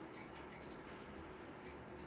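Quiet background hiss with a few faint, short clicks of a computer mouse.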